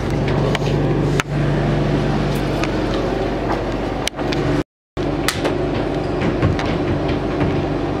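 A steady low hum with scattered clicks and knocks from a handheld camera being moved about. The sound cuts out completely for a moment about halfway through.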